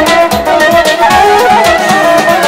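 Azerbaijani wedding band music played on guitar, garmon and synthesizer: an instrumental passage with an ornamented lead melody over a steady drum beat.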